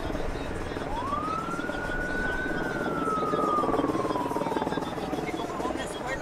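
An emergency vehicle's siren wailing through one slow cycle: it rises sharply about a second in, then falls gradually over the next several seconds. Beneath it runs a steady low rumble from a helicopter overhead.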